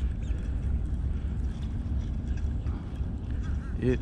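Steady low wind rumble on the microphone, with a few faint short sounds above it while a hooked fish is being reeled in.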